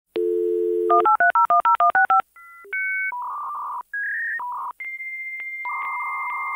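Dial-up modem connecting: a steady dial tone for under a second, a quick run of about nine touch-tone digits, then the high steady tones and hissing, warbling handshake tones of the modems negotiating a connection.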